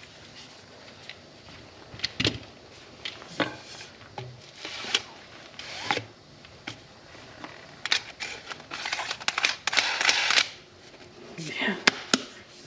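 Handling noise of a tenkara rod in its cloth sleeve and its rod tube: scattered clicks and knocks, then a longer stretch of scraping and rustling about eight to ten seconds in, and a sharp click near the end.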